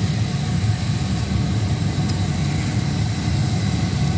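Commercial drum coffee roaster running with a steady low machine hum from its motors and cooling fan, as its stirring arms sweep freshly roasted beans around the cooling tray.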